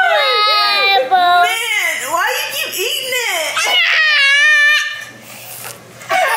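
A toddler's high-pitched, wordless voice: long wavering cries and squeals that bend up and down in pitch, falling quiet about a second before the end.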